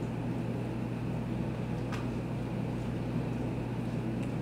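Room tone dominated by a steady low electrical-sounding hum, with a faint click about two seconds in.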